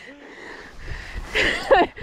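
A woman's short, breathy laugh about one and a half seconds in, after a quieter moment.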